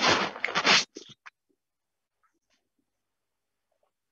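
A brief, loud rustling noise in the first second, with a couple of short faint crackles after it, then near silence.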